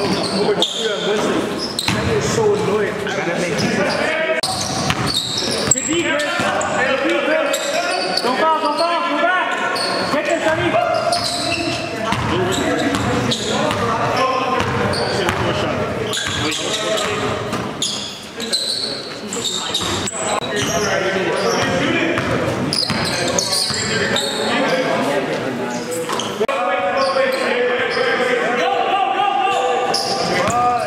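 A basketball being dribbled on a gym floor during play, with voices in the background, echoing in a large hall.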